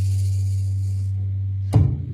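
The band's final G chord ringing out on acoustic guitar and bass guitar, a low bass note held steady under guitar notes that fade away within the first second. Near the end a single sharp thump cuts the ringing off.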